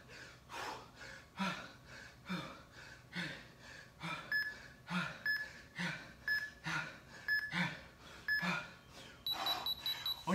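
Hard breathing from a man doing push-ups, a sharp breath out with each rep at about one a second. From about four seconds in, an interval timer beeps five times, once a second, then gives a longer beep near the end, marking the end of the work interval.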